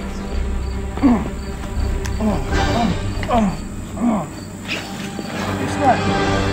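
A few short falling shouts or grunts, about five over four seconds, from people fighting. Under them runs a steady, evenly repeating insect-like chirping with faint background music.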